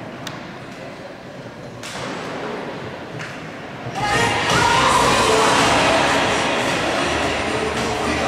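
A few sharp knocks in a large echoing hall, then about four seconds in a sudden loud swell of crowd noise with music.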